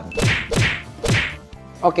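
Edited-in sound effect: three quick falling swish-hits about half a second apart, each sweeping from high down to low.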